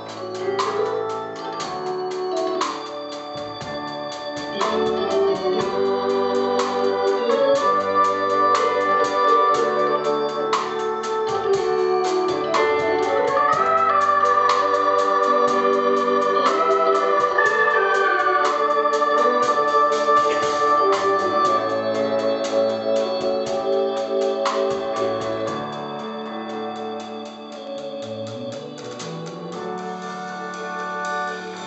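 Live country-rock band playing an instrumental break with no singing: long held, wavering organ-like lead notes over piano and the rest of the band, with a sliding rise in the lead about thirteen seconds in.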